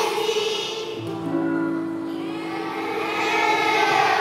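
A children's choir sings a song with instrumental accompaniment. About a second in the voices fall away while the accompaniment holds a steady chord, and the singing comes back near the end.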